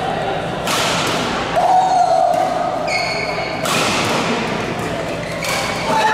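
Badminton rackets striking a shuttlecock during a rally: three sharp hits spaced a second and a half to three seconds apart, in a large hall.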